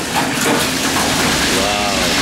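Steady sizzling hiss of chicken wings deep-frying in a commercial fryer.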